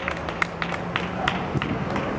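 A few people clapping along by hand, about four claps a second, petering out near the end.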